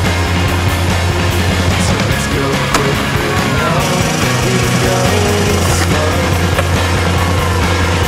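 Skateboard wheels rolling over stone paving under a rock-music soundtrack with a steady bass line, and a single sharp clack about a third of the way in.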